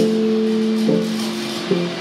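Keyboard playing held chords: each chord sustains at an even level without fading, and the notes change to a new chord about a second in and again near the end.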